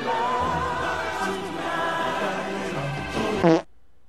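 A song with singing over orchestral backing, playing from a cartoon soundtrack. It swells into a short loud burst about three and a half seconds in and cuts off abruptly, leaving only faint background.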